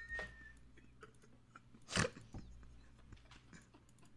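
A man laughing almost silently, with a high wheeze trailing off at the start and one sharp outburst of breath about halfway through.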